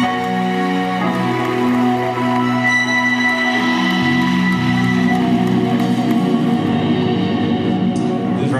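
Instrumental music from a Roland Jupiter-50 synthesizer playing held chords over an electric bass guitar, with the chords changing every second or two.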